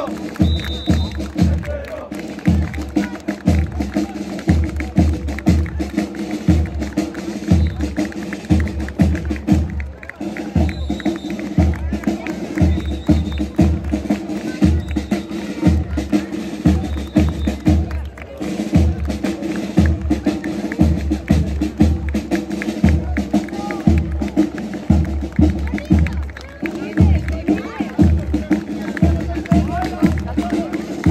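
Marching band of brass and drums playing a march, the bass drum beating steadily about twice a second under held brass notes.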